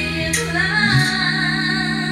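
A woman singing live into a handheld microphone, holding long wavering notes, over a steady sustained accompaniment.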